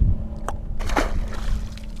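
A released redfish splashing into the water at the side of the boat about a second in, over a steady low rumble.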